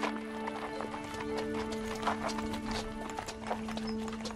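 Horse hooves clopping in an irregular run of knocks, under a background music score of long held notes.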